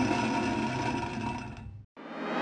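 Sound effect of an animated intro: a steady scraping rumble as a ring rolls along a surface, fading slightly and cutting off abruptly near the end.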